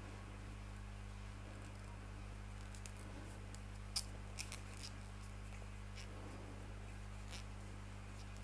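Crochet hook and fine yarn being worked by hand for treble crochet stitches: a few faint clicks and light rustles, the clearest about four seconds in, over a steady low hum.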